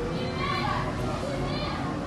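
Faint, high-pitched background voices like children playing, heard twice briefly over a steady low room hum.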